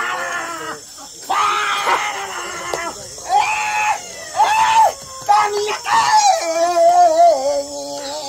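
Human voices calling and shrieking in a string of short, pitched, held cries, one after another; near the end one longer wavering call sinks in pitch.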